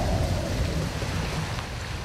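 A low rumbling noise with a faint falling whoosh, dying away steadily.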